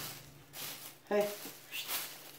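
Thin plastic grocery bag rustling and crinkling in short bursts as it is held open and loose flour is shaken into it from a baking pan.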